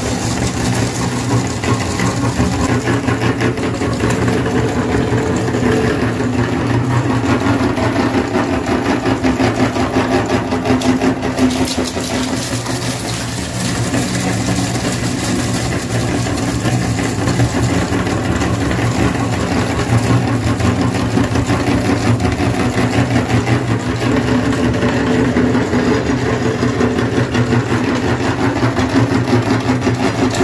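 A motor-driven meat grinder running steadily with a low hum, its auger crunching small hard coloured pieces into crumbs with a continuous dense crackle.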